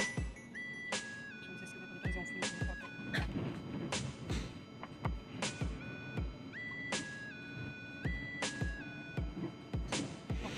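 Background music with a steady beat of low drum hits, about two a second, under a melody of held notes that step up and down in pitch.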